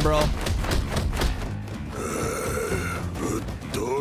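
Anime episode soundtrack: background music under a fight scene, with a short line of dialogue near the end.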